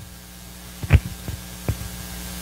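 Steady electrical hum from the microphone and PA system during a pause in speech, with two short dull thumps, the louder about a second in and a fainter one near the end.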